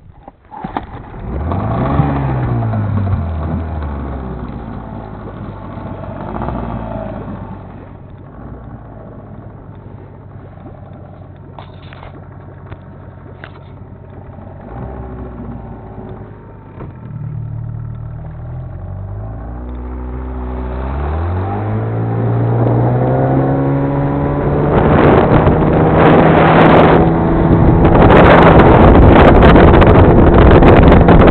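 Small outboard motor on an inflatable boat starting about a second in, briefly revving and settling to idle. From about 20 s it revs up and holds a steady higher speed as the boat gets under way, growing louder toward the end.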